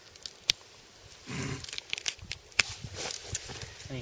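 Carrots being pulled up out of a garden bed by their leafy tops: roots tearing out of the soil and foliage rustling. There is a sharp snap about half a second in, then a run of tearing and crackling from about a second and a half.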